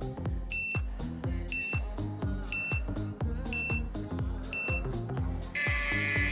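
Workout background music with a steady beat, over which an interval timer gives five short high beeps a second apart, counting down the last seconds of the exercise. A louder, longer tone near the end marks the end of the interval.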